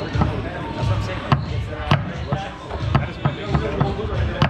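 Foosball in play: the hard ball clacking off the plastic players and the table, with knocks from the men and rods, a string of sharp hits spaced roughly half a second to a second apart, over low background voices.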